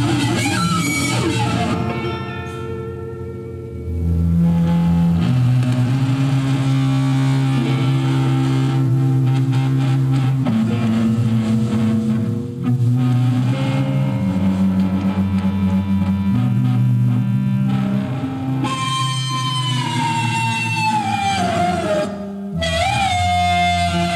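Live band music, instrumental, with guitar over deep sustained notes that change step by step. Near the end a high held note slides slowly downward.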